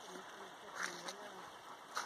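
Faint voices of people talking at a distance, with a brief light rustle about a second in.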